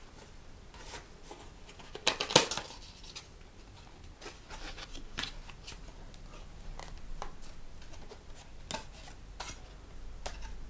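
A cardboard gift box being opened by hand: scattered clicks, taps and scrapes of cardboard and fingernails, loudest in a short cluster about two seconds in.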